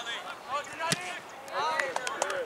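Shouting voices on a soccer pitch, with one sharp thud of a soccer ball being kicked about a second in.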